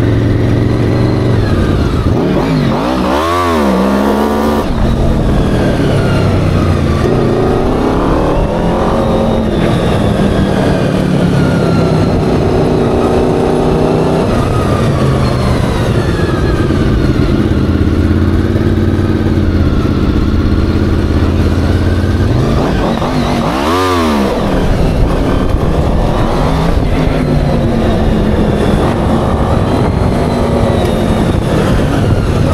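Homemade off-road buggy's engine running under throttle, its pitch rising and falling as it is driven. Two sharp revs rise and drop back quickly, one a few seconds in and another about three-quarters of the way through.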